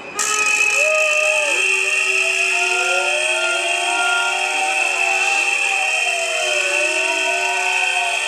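Protest din from rally noisemakers: a steady shrill whistling with several horn- or siren-like tones sliding up and down and overlapping one another, starting abruptly.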